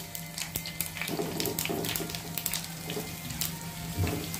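Hot oil with tempered mustard seeds, green chillies and sesame seeds sizzling with a fine, steady crackle in a non-stick pan, as soft pieces of steamed dhokla are slid in on top.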